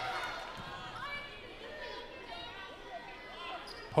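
Volleyball rally sound from the court: faint voices from the crowd and players, with the ball being struck.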